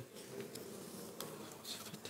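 A faint steady hum with a sharp click at the start and a few small ticks and rustles of hands handling the altar vessels and missal.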